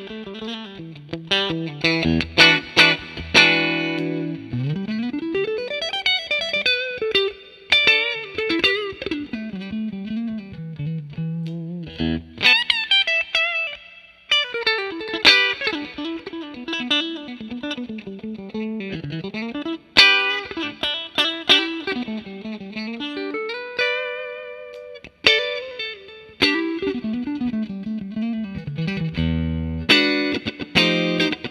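Fender Japan Heritage 60s Stratocaster electric guitar played with a clean tone and effects. It plays single-note melodic phrases and picked chords, with a long rising pitch slide about five seconds in and a wavering held note later on.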